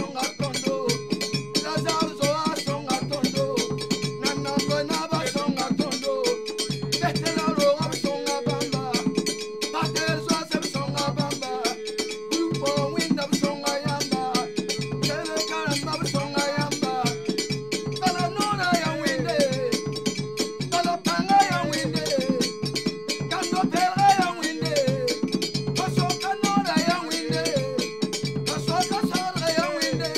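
Traditional Mooré song: a group of men singing together in a melodic, gliding line over hand drums keeping a steady rhythm.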